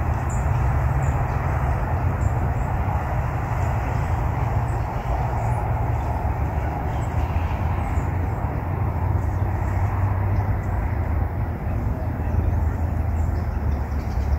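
Steady outdoor background noise: a continuous low rumble with an even hiss over it, no distinct events.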